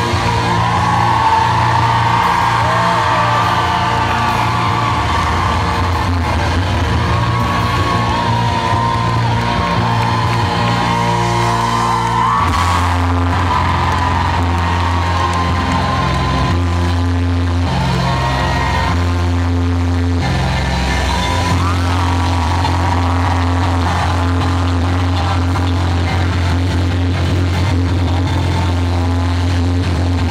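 A live rock band playing loud through a PA, heard from the audience. A steady bass line shifts to new notes about twelve seconds in, with a singing voice on top.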